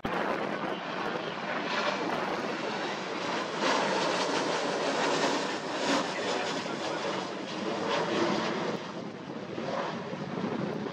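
Boeing 737-800 jet with CFM56 engines at high thrust, climbing overhead in a go-around. A steady jet roar that swells around the middle.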